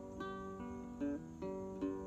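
Small acoustic guitar played solo in a short instrumental passage between sung lines, its notes changing several times.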